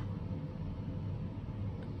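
Steady background hum and faint hiss of room tone, with no distinct sound event.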